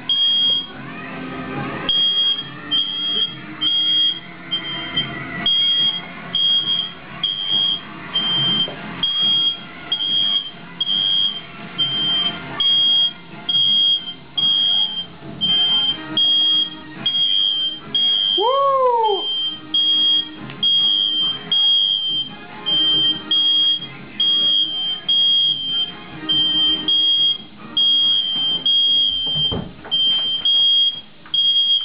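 Smoke alarm beeping shrilly and repeatedly, about two beeps a second, set off by smoke from a hat burning in a tray indoors.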